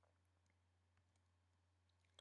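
Near silence: only the faint, steady low hum of the recording.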